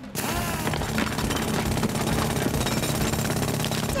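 Cartoon sound effect of a handheld hammer drill boring into cave rock. It is a rapid, steady hammering that starts abruptly and carries on, shaking the mountain.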